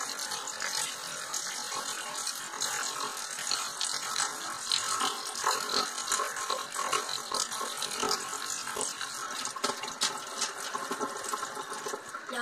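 Water moving inside an upside-down plastic bottle held over a steel sink, an uneven steady watery noise.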